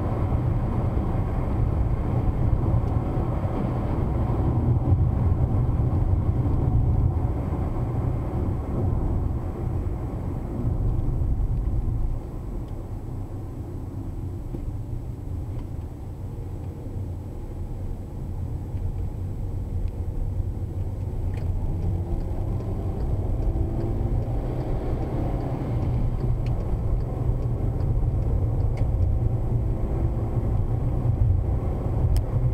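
Car interior noise while driving on a highway: a steady low rumble of engine and tyres on asphalt. It drops in level about twelve seconds in and builds again over the last several seconds.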